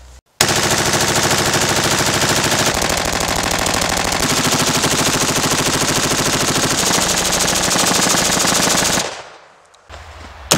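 5.56 mm rifle fired on full automatic from a drum magazine: one long unbroken burst of rapid shots, starting about half a second in and stopping about a second before the end, then trailing off.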